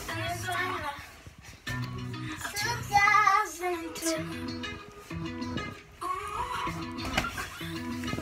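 A young girl singing over pop music with a steady, repeating bass line; her voice swells loudest about three seconds in.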